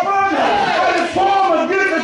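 Loud, raised voices shouting, pitch rising and falling, with several voices overlapping at once.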